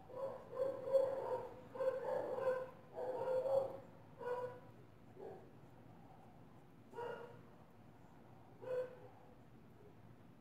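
A dog barking and whining: a quick run of calls in the first four seconds, then single short calls at about seven and nine seconds in.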